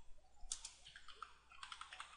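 Faint keystrokes on a computer keyboard: a few quick key presses about half a second in, then another short run of presses near the end.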